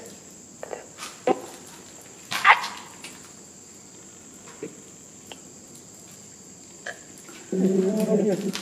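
A phone speaker playing the Necrophonic spirit-box app: short scattered voice-like fragments, the loudest a brief rising cry about two and a half seconds in, over a steady thin high whine.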